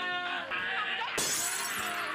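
Glass shattering: a sudden crash of breaking glass about a second in, lasting just over half a second.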